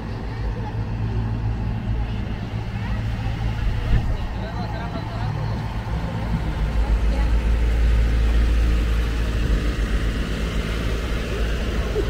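Low, steady rumble of a motor vehicle engine on a city street, swelling louder about halfway through, with people's voices in the background.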